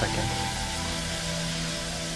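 Shrimp and vegetables sizzling in a hot wok as they are tossed, a steady hiss, with background music held steadily underneath.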